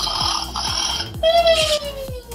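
Meccano M.A.X. robot's electronic go-to-sleep sounds: a buzzy synthesized tone, then a tone gliding downward, over a steady low beat. Its servo motors whir as they tip the face screen forward.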